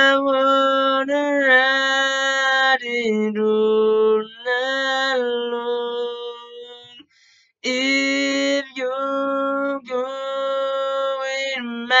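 A man singing a cappella, holding long sustained notes with slight bends in pitch, breaking off briefly about seven seconds in.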